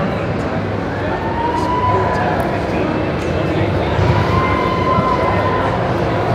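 Steady hubbub of many people talking at once in a large hall, no one voice standing out.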